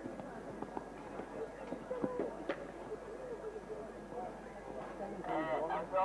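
A horse cantering on sand arena footing, a few dull hoofbeat thuds over a murmur of background voices. A man's voice starts speaking near the end.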